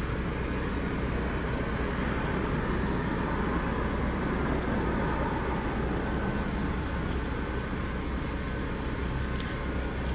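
Steady low outdoor background rumble, even throughout, with no distinct events.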